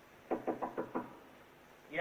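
Five quick knocks on a door, evenly spaced over about a second, heard over the steady hiss of an old optical soundtrack.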